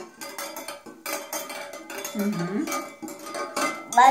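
Wire whisk beating raw eggs in a glass bowl: quick, irregular clinks and taps of metal against glass.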